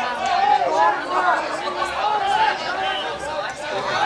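Crowd chatter: many voices talking and calling out at once, overlapping so that no single speaker stands out.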